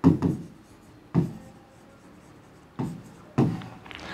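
Pen writing on an interactive display board: about five short scratching strokes with pauses between them as a word is written.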